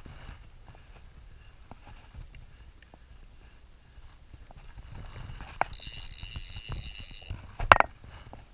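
Scattered light clicks and knocks while a fish is played on a fly rod. About six seconds in, a fly reel's click ratchet buzzes for about a second and a half, and a brief loud sound follows near the end.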